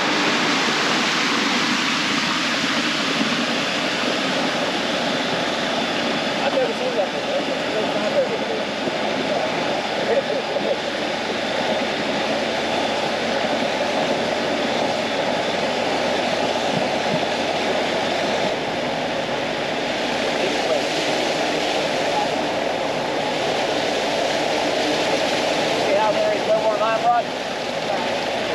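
Homemade swamp buggy running steadily as it drives along a trail flooded with shallow water, a continuous loud engine and road noise without breaks.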